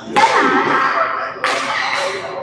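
Two sharp smacks about a second and a half apart, each followed by a ringing tail in a large echoing hall.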